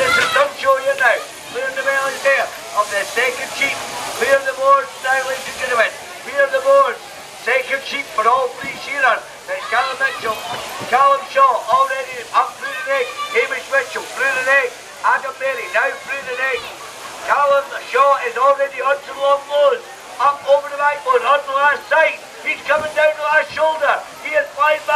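A man's fast, raised-voice commentary over a public-address system, running on with barely a break.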